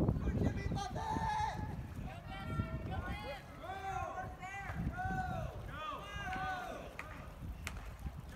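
High-pitched voices calling out in a string of short repeated cries, with no clear words, over wind rumbling on the microphone. A single sharp click near the end.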